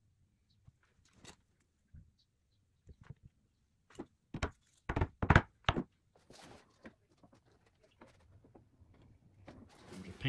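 Scattered light taps and knocks of tools and fret wire on the bass neck and wooden workbench during fretting, with a run of sharper knocks between about four and a half and six seconds in.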